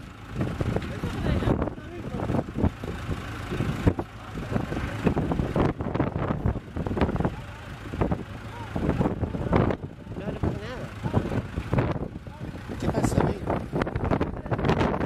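Tractor engine running under load as it tows a half-submerged SUV out of a river, its low rumble rising and falling unevenly.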